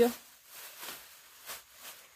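Faint crinkling rustle of a thin clear plastic bag being pulled open and handled, coming in a few short stretches.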